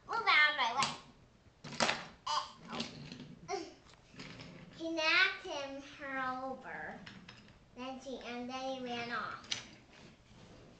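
A young child's voice making wordless sounds and babble, some drawn out with the pitch sliding up and down.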